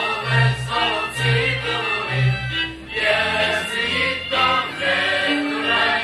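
Czech folk song sung by a group of voices with folk band accompaniment and a deep bass line changing notes every half second or so.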